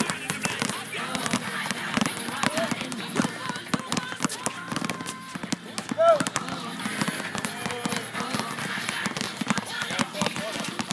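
Several basketballs being dribbled at once on an outdoor hard court: an irregular, overlapping patter of bounces throughout, with voices in the background.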